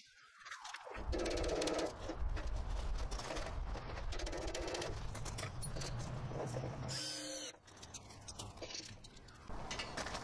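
Cordless drill-driver running in long stretches, driving screws into a plywood cradle, with a short higher whir about seven seconds in, then quieter handling.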